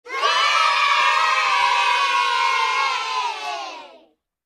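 A crowd of children cheering and shouting together, fading out over the last second.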